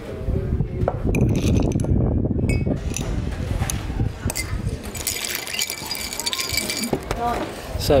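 Ice cubes clinking and rattling in a drinking glass as it is handled, in a cluster about a second in and a longer run of ringing clinks from about five to seven seconds.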